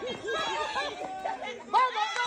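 Several excited voices shouting and chattering over one another, fairly high in pitch, as onlookers call out during a children's footrace.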